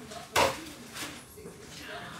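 A single sharp knock about half a second in, as a packaged item is set down on the kitchen countertop; otherwise quiet room tone.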